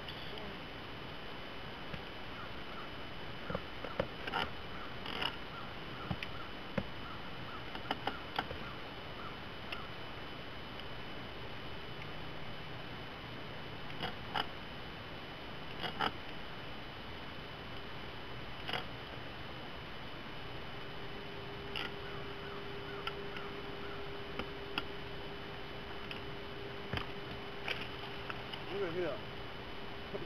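Scattered sharp clicks and knocks of gear being handled in a fishing boat, a dozen or so spread irregularly over a steady faint hum. A low steady tone comes in about two-thirds of the way through.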